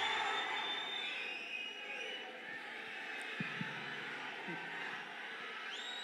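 Large indoor audience cheering and murmuring as one diffuse wash of noise, dying down over the first couple of seconds and then holding at a steady low level.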